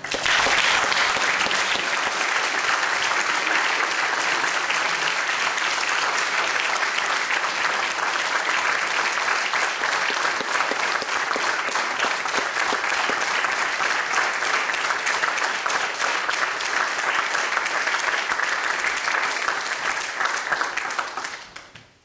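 Church congregation applauding, breaking out at once and holding steady, then fading out near the end.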